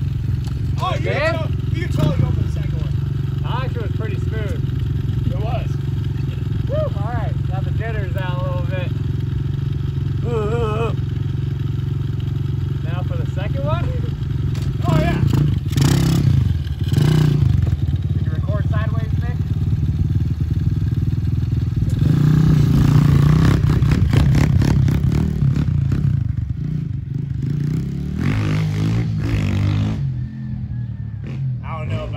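Small single-cylinder four-stroke pit bike (Kawasaki KLX110) running at idle, then revving as it rides off. The revs rise about halfway through and again, louder, later on.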